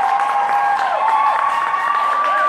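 Audience in a hall cheering and clapping, with high-pitched shouts and shrieks held over scattered applause.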